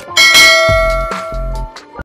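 A bell-ring sound effect strikes about a quarter second in and rings on in several steady tones, fading slowly, over music with two deep bass thumps.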